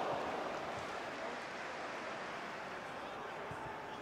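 Steady, even background noise of the match broadcast's stadium ambience, with no distinct events, easing slightly over the few seconds.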